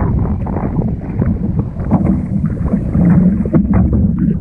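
Sea water sloshing and splashing against a camera at the water's surface: a muffled low rumble with irregular small splashes.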